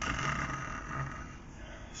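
A man imitating snoring: a breathy, rasping snore through the open mouth that fades in the second half, mimicking a dog sound asleep.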